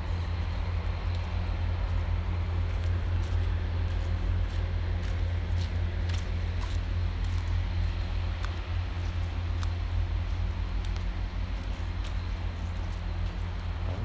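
A steady low rumble runs throughout, with scattered light ticks and crackles of footsteps on a dry dirt trail.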